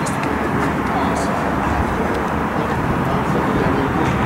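Outdoor football training ambience: indistinct voices over a steady rumble, with a few short knocks of footballs being struck and caught by goalkeepers, one right at the start and another about a second in.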